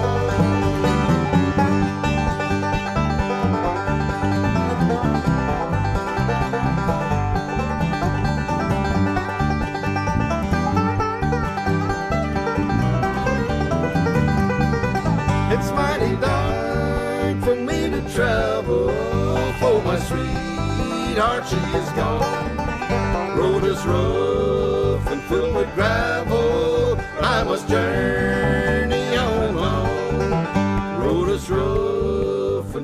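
A bluegrass trio of banjo, acoustic guitar and bass guitar playing an instrumental passage of a song with a steady beat.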